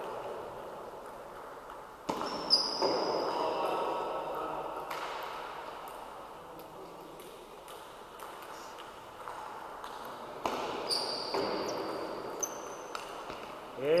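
Table tennis ball clicking off paddles and the table in two short rallies, the first about two seconds in and the second past the ten-second mark. Short high squeaks of sneakers on the sports-hall floor come with each rally, and the clicks echo in the large hall.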